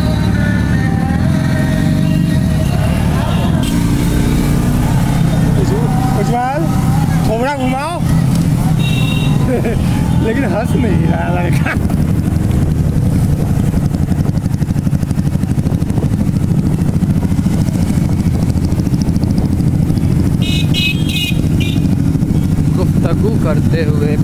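A motorcycle engine runs in a steady low drone while riding, with engines of other bikes close by. Voices are heard over it in the first half.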